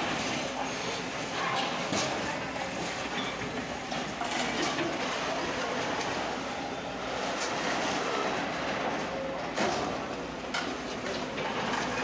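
Sumitomo long-reach excavators demolishing concrete buildings: a continuous clatter and crunch of concrete and debris breaking and falling, with sharp knocks about 2 s, 4 s and 10 s in.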